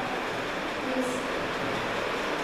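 Steady hiss of background noise, with a brief voiced hum about a second in.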